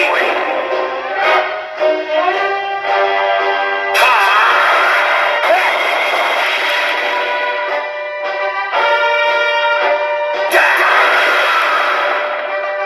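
Kyoraku CR Pachinko Ultraman M78TF7 pachinko machine playing its reach-battle sequence: game music with battle sound effects and voice clips. A sudden burst of effects with a rising sweep comes about four seconds in.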